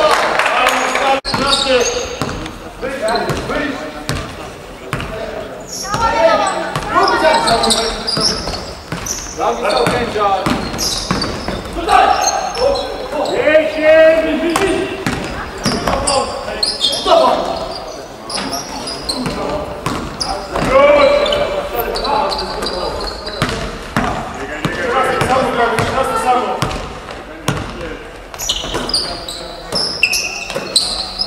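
Live game sound of basketball in a large sports hall: a basketball bouncing on the hardwood court and players' feet, mixed with players' voices calling out, all echoing in the hall.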